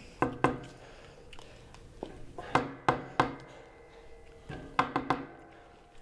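Sharp, hollow knocks or taps, each with a brief ringing tone. They come in three groups: two near the start, three around the middle and three more toward the end.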